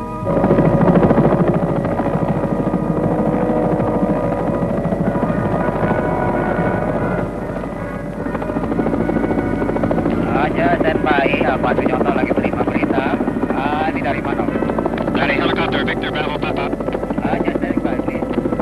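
Helicopter rotor and engine, heard from inside the cabin, starting abruptly and running steadily. From about ten seconds in, voices talk over it.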